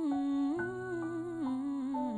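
A woman humming a wordless melody with closed lips, with vibrato on the held notes, over sustained piano chords; a new chord comes in about half a second in.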